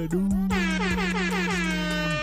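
Air horn sound effect: one long, steady blast lasting about two seconds.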